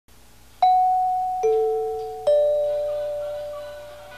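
Three-note chime: three struck notes, high, then low, then in between, each ringing on and slowly fading, a little under a second apart.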